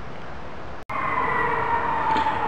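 Steady background hiss that cuts out abruptly just before a second in. It gives way to a louder hiss with a steady whine that slowly falls in pitch.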